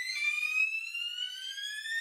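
Building fire alarm sounding a high electronic tone that rises slowly in pitch, with a second tone joining just after the start.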